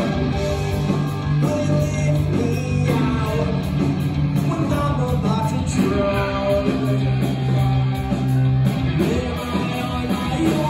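Skate punk band playing live: electric guitars, bass guitar and drum kit with a sung vocal line.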